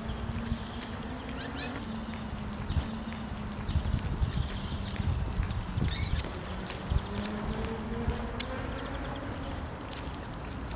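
Footsteps of two people walking on an asphalt path, irregular light steps, over a steady low hum.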